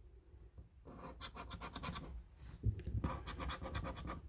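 A coin scratching the coating off a paper scratch card in quick repeated strokes. The scratching comes in two spells, starting about a second in and again just past halfway.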